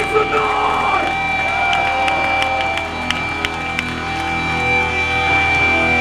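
Electric guitar amps ringing between songs at a hardcore punk show: steady feedback tones hang over a low amp hum, with scattered clicks. A shout cuts through in the first second.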